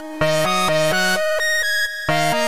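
Electronica track: a synth lead and a synth bass line playing short stepped notes, about four a second, after a brief drop in level at the start.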